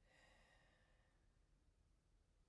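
Near silence: room tone, with a very faint short sound in the first second.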